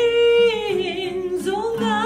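Two women singing a Kuki-language song in unison with acoustic guitar accompaniment, holding a long note that steps down in pitch about midway and rises again near the end.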